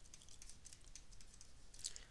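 Faint, light taps and clicks of a stylus writing on a digital tablet.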